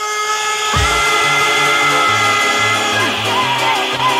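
Mid-1990s hardcore rave music from a DJ set. A deep falling bass hit comes just under a second in, then a held synth chord runs over a stepping bass line and bends down in pitch near the end.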